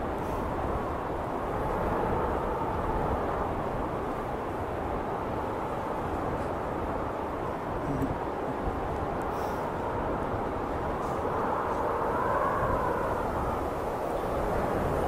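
Car cabin noise while driving on a snowy road: a steady low tyre and road rumble with an engine drone that wavers slightly and rises a little in pitch near the end.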